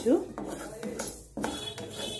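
A wooden spatula scraping and knocking against a metal kadai as mustard and fenugreek seeds are stirred and dry-roasted, with several separate scrapes and knocks.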